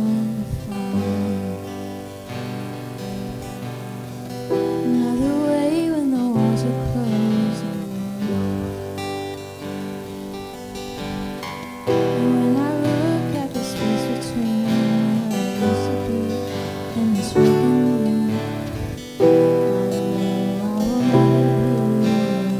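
A woman singing a worship song into a microphone, accompanied by a grand piano and acoustic guitar; the chords are held and change every few seconds under the sung melody.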